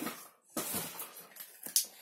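A plastic toy and its packaging being handled: short rustling scrapes, then a sharp click near the end.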